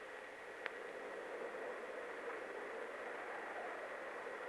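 Steady hiss of an old film soundtrack, with one sharp click a little over half a second in.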